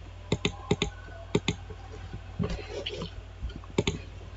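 Computer mouse clicking about four times, each click a quick pair of ticks as the button is pressed and released.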